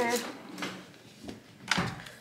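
Makeup items being handled and set down in a plastic-lined vanity drawer: a few light clicks, then one louder knock near the end.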